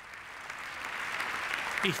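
Applause from lawmakers in a parliament chamber, growing steadily louder.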